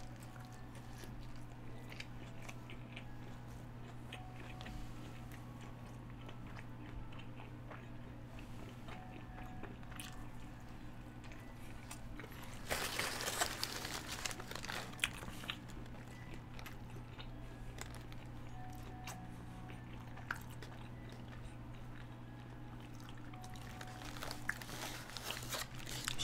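A person biting into and chewing a Taco Bell Quesalupa, whose cheese-infused shell is doughy and gummy, with faint scattered mouth clicks and a louder burst of noise about halfway through. A steady low hum sits under it.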